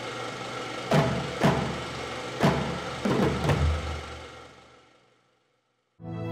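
Synthesised logo-sting music: a sustained tone with a series of sharp percussive hits, the last of them landing on a deep boom, then fading out.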